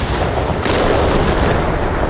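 Loud explosion in urban combat, its blast running on as a dense roar, with a sharp crack about two-thirds of a second in.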